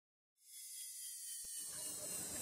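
Faint hiss, with low background music slowly fading in near the end.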